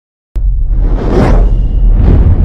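Logo intro sting: a whoosh sweeping up about a second in over a deep, loud bass rumble, with music; it starts abruptly just after the beginning.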